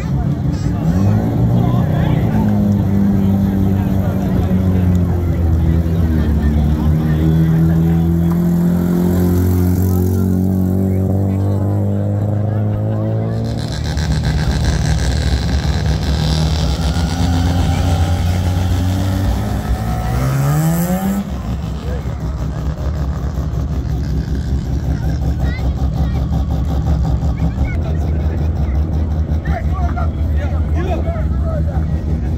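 Mazda rotary car engines running with a steady drone, revved up quickly about a second in and again around twenty seconds in.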